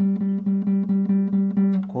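Acoustic guitar picking the note G over and over at one steady pitch, about four to five plucks a second.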